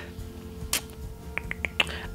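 A few short, soft clicks, one near the start and a quick cluster in the second half, over a faint steady tone.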